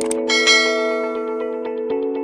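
Bright bell chime sound effect striking just after the start and ringing out over about a second and a half, the ding of a notification bell being clicked, over intro music with sustained chords and a quick ticking beat.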